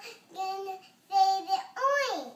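A young girl singing wordlessly in a high child's voice: two short held notes on the same pitch, then a third note that slides downward near the end.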